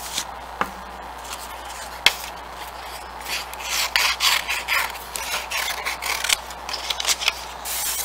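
Sheets of black construction paper rustling and scraping on a tabletop as they are handled and cut with scissors, in many short irregular bursts, with a couple of sharp clicks in the first two seconds.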